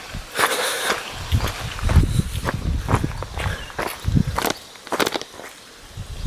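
Footsteps of a hiker walking on a rocky trail, a little under two steps a second, with scuffs and camera-handling knocks, growing quieter near the end.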